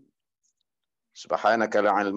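A man's voice reciting Arabic in long, held tones over a video call. It breaks off, the sound drops to dead silence for about a second, and the recitation resumes just over a second in.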